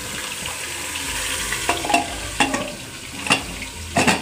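Carrots sizzling in ghee in an aluminium pressure cooker, a steady hiss, with several sharp metal clinks in the second half.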